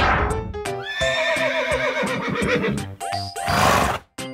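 A horse whinnying for about two seconds, with a wavering, shaking pitch, laid over cheerful background music. A swooshing effect sounds at the start, and another swells near the end.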